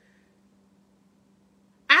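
Near silence: room tone with a faint steady low hum during a pause in speech. A woman's voice starts again right at the end.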